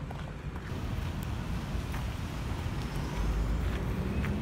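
Outdoor street ambience: a low rumble of road traffic mixed with wind buffeting the phone's microphone, growing a little louder about three seconds in.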